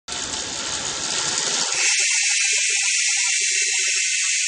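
Steady hiss of noise, a sound effect under an animated logo intro. A little under two seconds in, its low part drops away, leaving a thinner, higher hiss.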